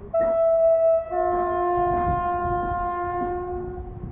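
Horn of the approaching SM31 diesel locomotive: a short blast, then after a brief break a longer blast of about three seconds with a deeper note joining it.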